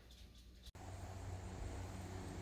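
Faint room tone that switches abruptly, under a second in, to a steady low background noise of open air with a low hum.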